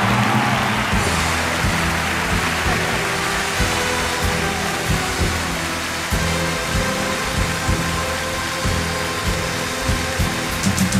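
Audience applauding over orchestral music.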